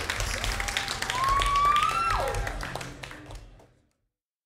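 Small audience clapping after a song, with one long cheer that rises and then drops in pitch; the applause fades out about three and a half seconds in.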